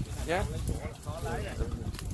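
Speech only: a person talking in Vietnamese in short, quiet phrases.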